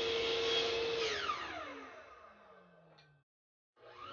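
Table saw motor running steadily, then switched off: about a second in, its hum falls in pitch and fades as the blade spins down.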